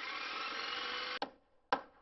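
An edited-in sound effect for a logo intro: a steady, noisy sound lasting about a second that stops abruptly, then one short burst near the end.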